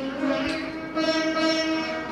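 Several veenas played together in unison: held, ringing notes that step upward in pitch, with a sharp pluck about half a second in.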